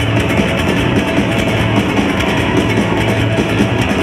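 A live band playing loud, with a banjo and an acoustic guitar strummed over a drum kit.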